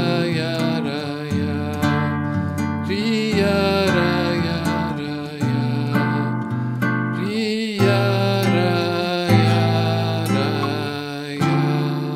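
Nylon-string classical guitar played fingerstyle: a chordal introduction in D minor, plucked chords and notes ringing out and fading between attacks.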